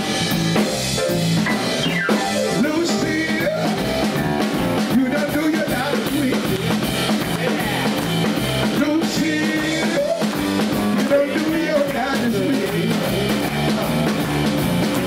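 Live rock-and-roll band playing: drum kit, electric bass and piano keeping a steady beat, with a male singer's voice over it.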